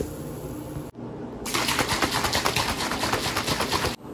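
Pre-workout drink being mixed in a plastic shaker bottle: a fast, dense rattling that starts about one and a half seconds in and cuts off just before the end.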